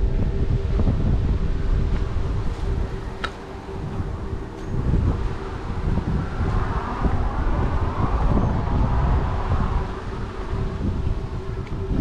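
Strong wind buffeting the microphone: a loud, uneven rumble that gusts and eases, with a faint steady hum underneath.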